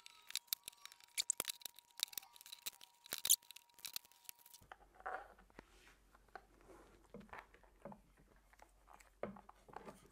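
Clear adhesive tape pulled off its roll in a rapid run of sharp crackling rips for about the first four and a half seconds, then quieter rubbing and handling as the tape is pressed down.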